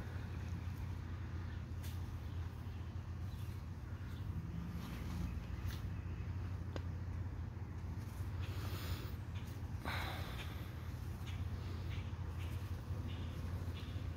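A low steady hum with a few faint ticks, and a short, sharp breath out through the nose about ten seconds in.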